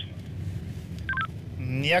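A short two-note electronic beep from a handheld police radio, a high note followed by a brief lower one, about a second in, over the steady low rumble of a moving car's cabin.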